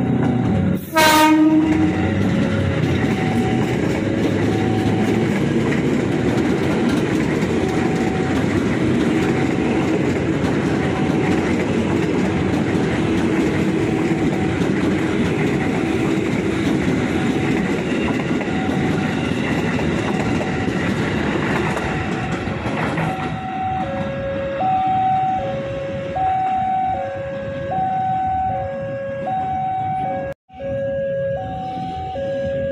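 A KRL Commuter Line electric train gives one short horn blast about a second in, then passes close by with a steady rumble of wheels on rail for about twenty seconds. Throughout, a level-crossing warning chime repeats; after the train has gone it is heard clearly as an alternating two-note chime, about one note a second.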